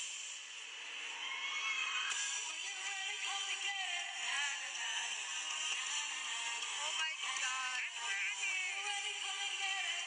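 Pop dance music with a sung vocal line, playing continuously for a stage dance routine; it comes through thin, with no bass.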